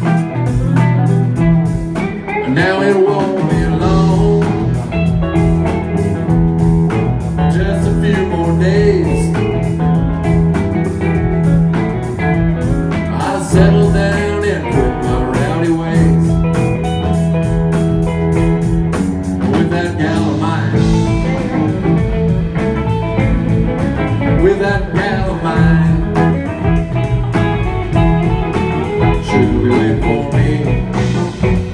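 Live band playing an instrumental guitar-led passage: guitars with bending lead lines over a steady drum beat, loud and continuous.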